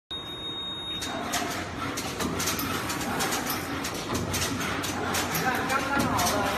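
CNC servo multi-colour screen printer running, a quick, irregular clatter of clicks and knocks from its mechanism and the glass bottles it handles.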